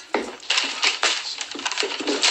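A quick, irregular run of knocks and clatters of crockery and cutlery.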